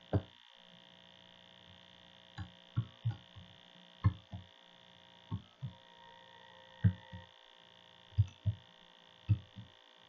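Computer keyboard keys struck one at a time, about a dozen separate sharp taps at an irregular, unhurried pace as a password is typed, over a steady electrical hum.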